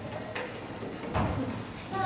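Faint voices with a few short hollow knocks, the loudest a little over a second in.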